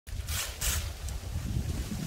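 Wind buffeting the microphone with a steady low rumble, and two brief rustles of a palm frond's leaflets as it is handled in the first second.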